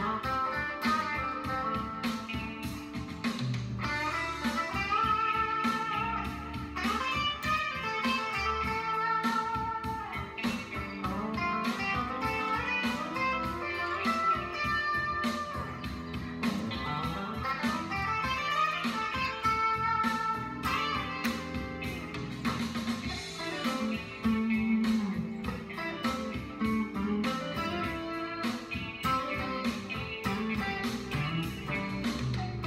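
2017 Gibson Les Paul Classic electric guitar playing blues lead licks with note bends over a blues backing track with a steady beat, played through a Boss GT-100 into a Marshall DSL amp.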